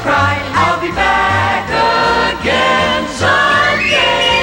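A Christmas song sung by a choir over instrumental backing with a steady bass beat.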